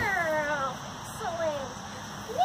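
A dog whining: two drawn-out calls that fall in pitch, the first longer, the second shorter about a second and a half in.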